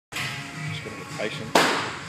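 A loaded barbell racked into a squat rack's hooks: one loud clank about one and a half seconds in.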